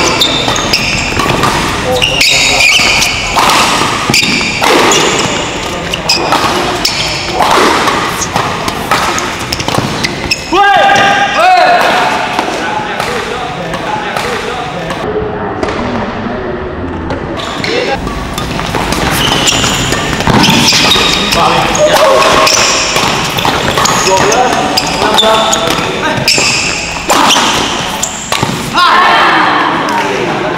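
Badminton doubles rallies: repeated sharp racket hits on the shuttlecock, including hard smashes, mixed with spectators' voices and shouts, echoing in a large indoor hall.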